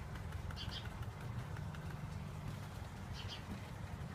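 A steady low hum with two faint, brief high chirps, one under a second in and one about three seconds in.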